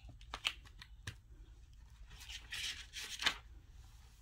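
Pages of a hardcover picture book being turned and the book handled: a few light clicks and taps in the first second, then a papery rustle about two seconds in that ends with a sharp tap.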